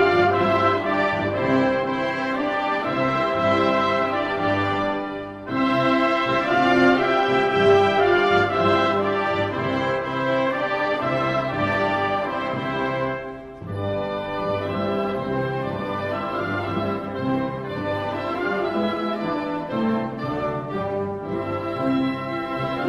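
Orchestral music with prominent brass playing slow, sustained chords, with brief breaks between phrases about five seconds in and again about thirteen seconds in.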